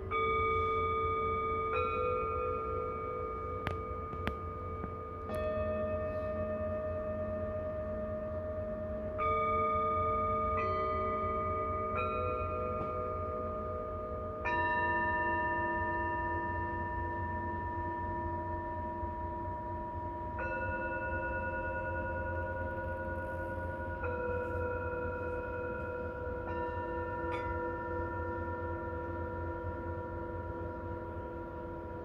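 Tibetan singing bowls struck one after another with a padded mallet, about ten strikes, each bowl ringing on for many seconds so the tones overlap into a layered chord. Several of the tones waver slowly as they sustain.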